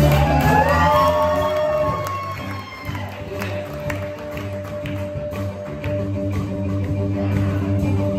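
Live blues band playing with cello, electric guitar and drums. Near the start a note slides up and is held for a couple of seconds.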